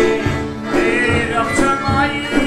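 Badakhshani folk music played live on long-necked plucked lutes, including a Pamiri rubab, strummed in a steady rhythm of about three to four strokes a second, with a voice singing a phrase about halfway through.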